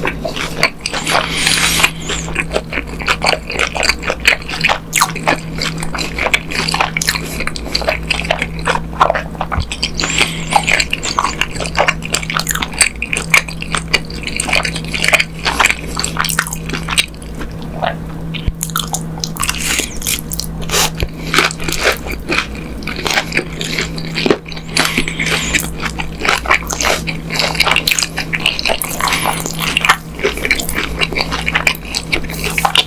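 Close-miked biting and chewing of a crumb-coated fried hotdog dipped in creamy sauce: a steady run of crunches, crackles and wet mouth sounds. A constant low hum runs underneath.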